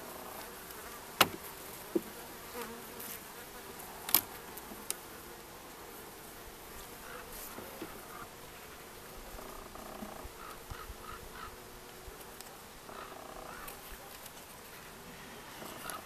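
Honeybees humming steadily over an open hive, with a few sharp clicks and knocks of a metal hive tool prying wooden frames loose, the loudest about a second in and about four seconds in.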